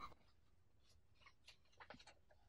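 Near silence: room tone, with a few faint small clicks in the second half.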